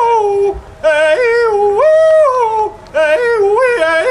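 A man hollering a contest holler, a loud high call that leaps up and down between held notes with yodel-like breaks. It comes in three phrases, with short breaths about half a second in and just before three seconds.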